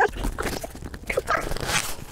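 Cardboard scraping and rubbing as a small, very tight cardboard box is worked open by hand, with short strained vocal noises mixed in.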